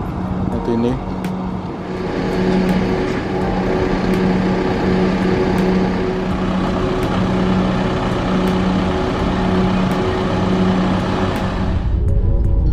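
Toyota Coaster minibus idling close by: a steady low engine hum that swells and fades about once a second, under a broad rushing noise.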